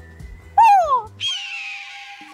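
A single bird squawk, falling in pitch and about half a second long, starts about half a second in, then background music begins with sustained notes.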